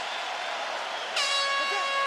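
Crowd noise, then about a second in the end-of-round horn sounds: one steady, held blast marking the end of round one.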